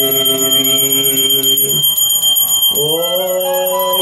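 Devotional music with long held notes that break off just before two seconds in and resume on a rising note about a second later, over a bell ringing steadily throughout the lamp-waving aarti.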